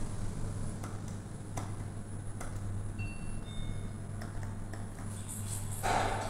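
Passenger elevator car in motion, heard from inside the cab: a steady low hum with a few faint clicks. A louder burst of sound comes just before the end, as the car reaches the floor.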